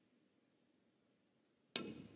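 Faint room tone, then a single sharp click near the end as a snooker cue tip strikes the cue ball.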